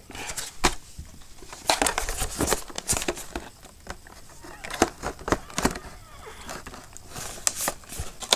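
Stiff clear-plastic clamshell packaging of a GoPro Jaws Flex Clamp crinkling and clicking as it is handled, in irregular sharp crackles.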